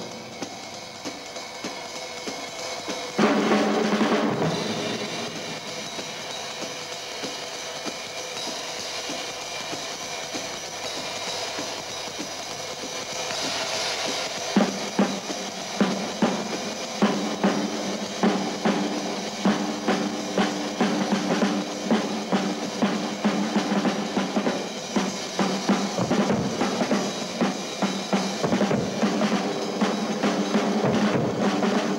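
Several drum kits played together by a group of drummers: a dense roll of snare, toms and cymbals with a loud crash about three seconds in, then from about halfway a steady beat with sharp, regular accents.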